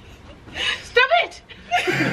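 A woman laughing in short bursts, one of them rising to a high squeal about a second in.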